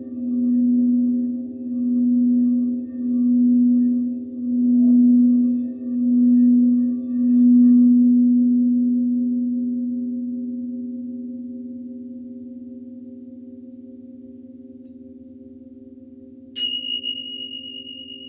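Large frosted crystal singing bowl sounding one low steady tone that swells and fades in an even pulse about every second and a half; about eight seconds in the pulsing stops and the tone slowly dies away. Near the end a small, high-pitched bowl is struck once and rings over it.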